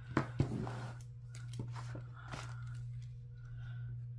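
Small desk handling sounds: two light knocks about a quarter second in as metal tweezers are set down and a pen is picked up, then a few faint clicks and soft paper scratching. A steady low hum runs under it all.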